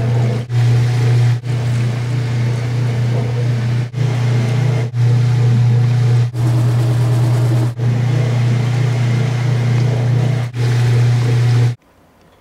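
Foamy water gushing from a striped flexible discharge hose onto pavement, over a steady low hum. The sound drops out briefly about seven times, as at edit cuts, and stops abruptly just before the end.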